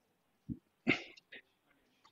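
A soft low thump, then a short, faint cough-like throat sound about a second in, with a fainter one after it.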